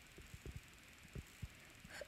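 Near silence with a few faint, short low taps.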